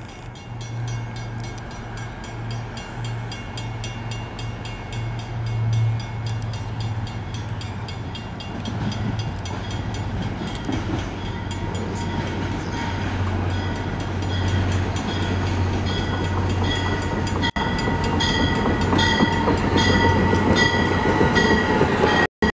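MBTA commuter rail train approaching with its cab car leading and the diesel locomotive pushing at the rear: a steady low engine hum that grows louder as the coaches come close and pass near the end. A grade-crossing bell dings rapidly and regularly over it.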